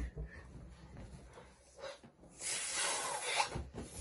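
About a second of hissing rush, past the middle: air escaping from the neck of a blown-up rubber balloon as it is pinched and handled.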